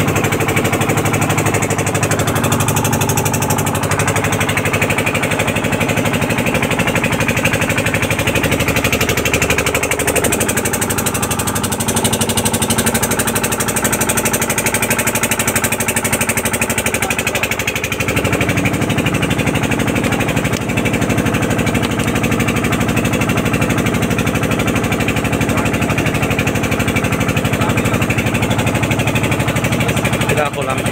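Motor of a wooden river longboat running steadily and loud, with a fast, even beat.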